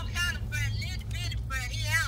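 A person talking over a FaceTime video call through a phone's speaker, with the low, steady hum of an idling Ford pickup underneath.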